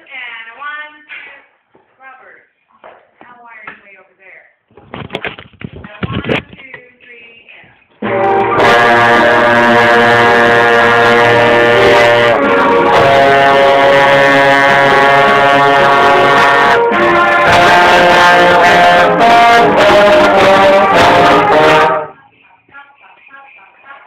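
Trombone played loudly, bell right at the microphone: a phrase of held notes changing pitch several times, starting about eight seconds in and stopping abruptly near the end. Quiet voices are heard before and after it.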